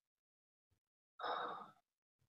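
A person's short sigh, a single breath out lasting about half a second, a little over a second in; near silence before it.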